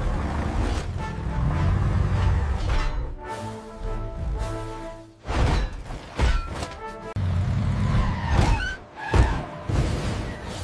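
Cartoon action soundtrack: dramatic music under rumbling and crashing effects of a collapsing scrap-metal pile. There are several heavy impacts in the second half and a whoosh near the end.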